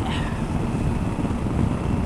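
Steady rush of wind and road noise on the microphone of a motorcycle riding at speed, with the bike's running heard underneath.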